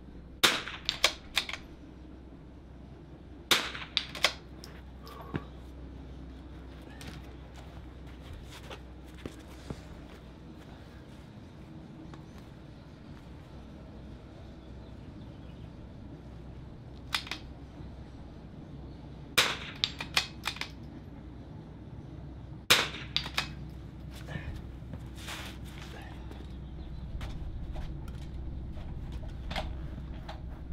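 .22LR rimfire rifle firing single shots, each a sharp crack, in small groups a few seconds apart. A long stretch of about ten seconds passes with no shots before firing resumes.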